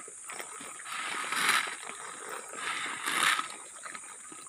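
Water poured from a plastic bucket splashing onto dirt ground, in two gushes about a second and a half apart.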